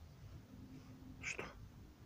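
Rook giving one short, high call a little past halfway.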